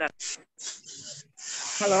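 Several short hisses come through a video-call participant's microphone as her audio comes on, the longest running into a woman saying "Halo" near the end.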